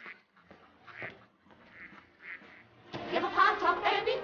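A quiet stretch with a few short, soft calls that sound like duck quacks, then singing voices with music start about three seconds in.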